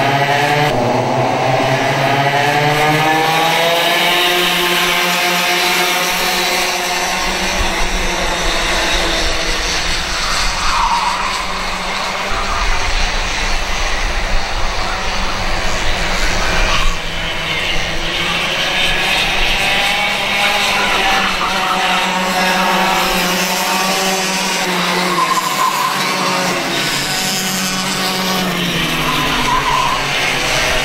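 Engines of several Mini and Micro class racing karts running on track, their pitch rising and falling again and again as they brake into and power out of the corners.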